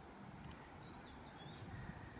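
Quiet outdoor background with a faint bird chirping a few short, high notes around the middle.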